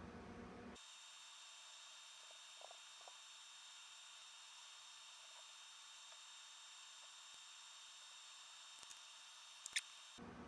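Near silence: a faint steady hiss of room tone, with a few faint ticks and one sharp click near the end.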